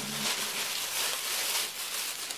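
Dried herb leaves rustling and crackling as they are handled, a steady dry hiss.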